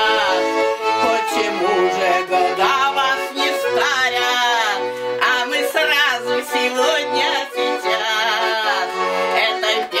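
A small accordion plays a lively folk tune, its short bass notes repeating under steady chords, while a woman sings loudly along with it.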